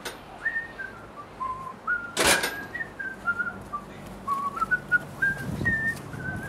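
A person whistling a tune: short separate notes stepping up and down in pitch, a few notes a second. A brief loud rush of noise cuts across it a little over two seconds in.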